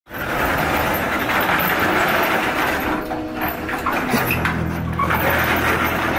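Corrugated metal tilt-up garage door being lifted open, rattling and scraping loudly as the panel swings up. Steady low tones join about four seconds in.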